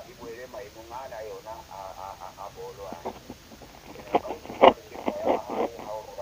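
Speech only: a person talking in a radio interview recording.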